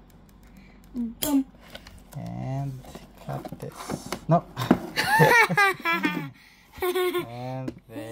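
People talking and laughing; the recogniser caught no clear words.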